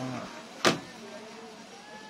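A metal sliding gate being pulled shut: one sharp metallic click just over half a second in, then a faint steady running sound as the gate rolls.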